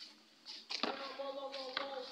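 A short click, then a person's voice holding one steady note for about a second and a half.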